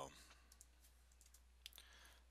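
Near silence: room tone, with a couple of faint computer keyboard key clicks near the end.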